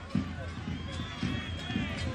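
Faint, indistinct voices of spectators around a football ground, over a steady low hum.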